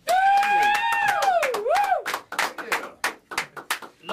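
A long high whoop of cheering, held and then dipping and rising again, followed by a few people clapping for about two seconds.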